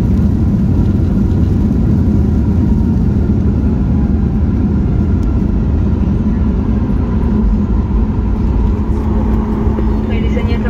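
Cabin noise inside a Boeing 737 MAX 8: a steady, loud rumble of the CFM LEAP-1B engines and airflow, with a faint steady whine, as the airliner arrives at the airport.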